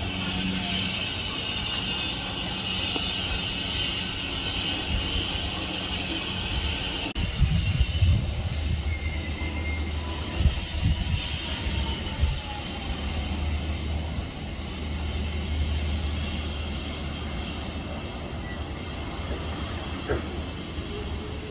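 Distant Arrow Dynamics steel roller coaster train rumbling along its track. About seven seconds in the sound changes abruptly to a deeper steady rumble with irregular low thumps for a few seconds.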